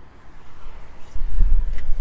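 A low rumble on the microphone that starts about halfway through, after a quiet first second.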